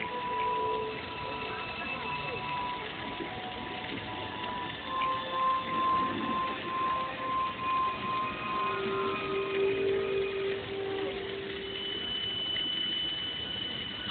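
Show music of long, steady held tones at several pitches, one note giving way to another, over a murmur of audience voices.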